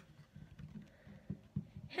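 Faint handling noise of hockey trading cards being fingered through and one drawn from the stack, with a few soft, scattered clicks.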